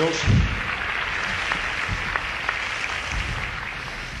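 Live audience applauding, a steady clatter of clapping, with one loud low thump about a third of a second in.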